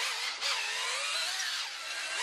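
Electric drill driving a spiral stirrer through a bucket of crystallising honey, its motor whine rising and falling in pitch as the speed and load change. The honey is being stirred, not whipped, so that it sets as smooth creamed honey.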